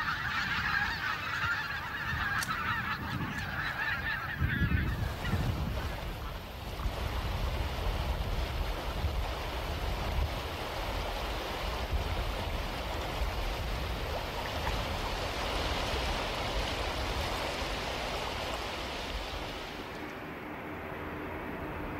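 A flock of wild geese honking in flight for about the first five seconds. Then a steady rushing noise of wind and choppy water, with a low rumble.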